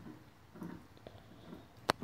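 Mostly quiet, with faint soft scuffs of Airedale Terrier puppies moving about on a concrete porch floor, and one short sharp click near the end.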